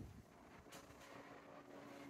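Near silence: room tone, with a faint steady hum coming in about halfway through.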